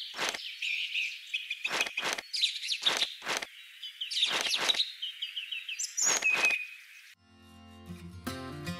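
Birdsong chirping throughout, broken by sharp clicks in pairs about every second or so as small toy pieces are handled. About seven seconds in the birdsong stops and acoustic guitar music begins.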